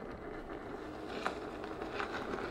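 Veteran Sherman electric unicycle riding at speed over a rough trail: steady tyre and riding noise, with one short tick about a second and a quarter in.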